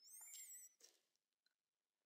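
Near silence, with a faint, high, wavering tone for under a second at the start.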